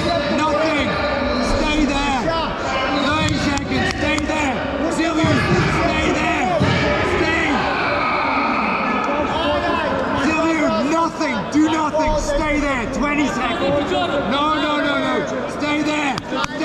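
Several people talking and calling out at once, their voices overlapping and echoing in a large sports hall, with occasional sharp thuds.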